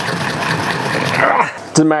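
Pestle grinding toasted coriander seeds, cumin seeds and black peppercorns in an overfilled mortar: a continuous gritty crunching and scraping that eases off about a second and a half in.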